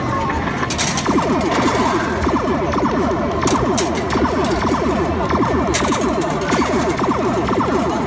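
Arcade machine electronic sounds: a fast, repeating run of falling electronic tones starts about a second in, over the steady din of a busy arcade, with a few sharp clicks.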